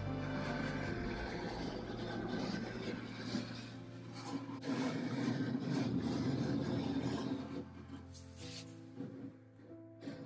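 Hand scraper rasping over wood veneer in repeated strokes, scraping off a white residue, fading out near the end. Background music plays throughout.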